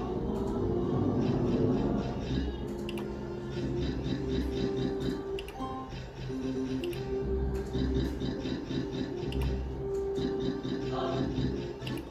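Novoline Book of Ra Deluxe slot machine sounding its electronic free-games melody as the reels spin and stop, with short clicking reel-stop and win tones over the tune.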